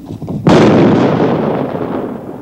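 A single explosion about half a second in, sudden and loud, its rumble dying away over the next second and a half: a dud 40 mm grenade being blown up where it lies by bomb disposal.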